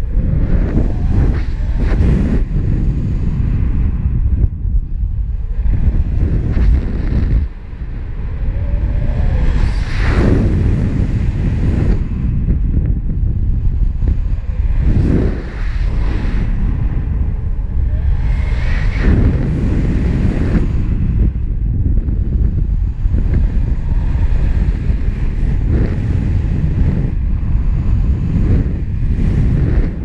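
Wind rushing over a paraglider pilot's GoPro microphone in flight: a loud, low rumble that rises and falls in gusts.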